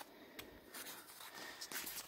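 Pencil drawing on the bumpy, paper-covered surface of a papier-mâché bracelet sculpture: faint scratching, with a couple of small clicks.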